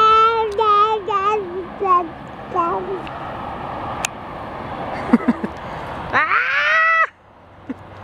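A dog whining. There is a string of high, wavering whines over the first three seconds, then one long whine that rises in pitch about six seconds in and cuts off suddenly. The dog has just spotted a rattlesnake.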